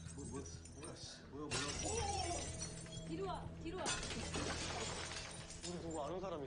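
A TV drama's soundtrack playing at low level: voices speaking over a long, dense burst of crashing noise that begins about a second and a half in, heard as shattering. Under it runs a steady low electrical hum.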